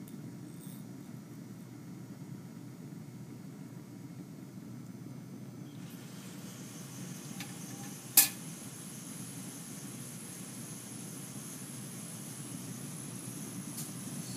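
Steady low rush of a lit Bunsen burner flame, with a faint high steady tone coming in about halfway. A single sharp click about eight seconds in is the loudest sound.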